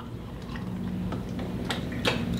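People sipping sangria from small glasses, with faint wet sips and small ticks, and a sharper click near the end as a glass is set down on a glass table top.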